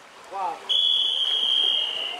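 A single long, high-pitched steady tone lasting about a second and a half and trailing off at the end, with a brief snatch of voice just before it.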